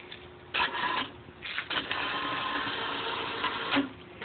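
A hand-operated chain fall hoist being hauled to lift a small block Chevy engine on a single strand of cord: a short burst of chain noise, then a steady run of about two seconds of chain clattering through the hoist.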